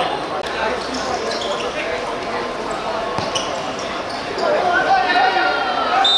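A football being kicked and bouncing on a hard outdoor court during five-a-side play, with players' voices that get louder about two-thirds of the way through.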